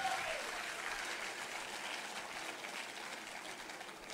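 Audience applauding in a large hall, slowly dying away.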